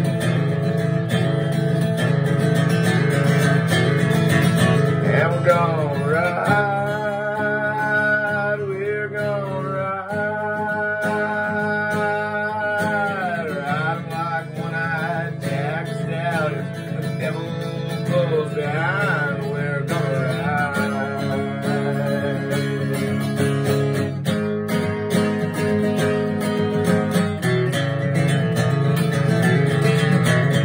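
Acoustic guitar strumming the instrumental part of a country song, with a wavering melody line over it from about five to twenty seconds in.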